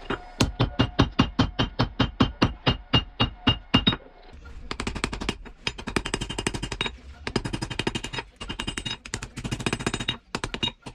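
A hand hammer striking red-hot spring steel on an anvil, forging a knife blade. For the first four seconds the blows come evenly, about five a second, each with a short metallic ring. From about halfway on, the blows come very fast, in bursts of about a second with short pauses between them.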